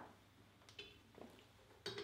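Near silence with a faint, short metallic clink about a second in and a soft knock just after: metal fittings on a stainless filter housing being handled as a filling valve is attached.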